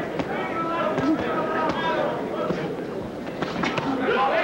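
Boxing arena crowd noise with shouting voices from around the ring, and a few quick sharp knocks near the end.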